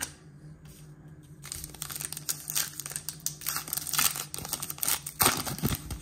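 A trading-card pack's wrapper being torn open and crinkled by hand: a run of crackling and tearing that starts about a second and a half in, loudest near the end.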